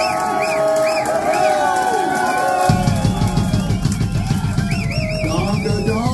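Live rock band with drum kit, bass and electric guitar suddenly kicking in a little before halfway through, over shouting voices in a club.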